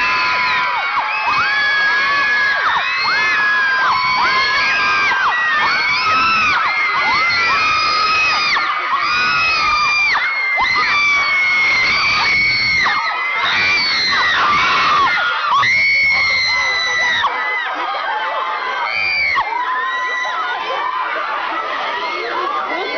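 A crowd of fans screaming, many high-pitched cries held and overlapping without a break, easing a little in the last few seconds.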